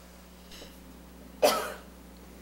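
A person's single short cough, about one and a half seconds in.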